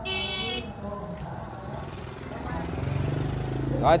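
A short, high vehicle horn beep at the start, then a motorbike engine passing on the lane, growing louder over the last second and a half.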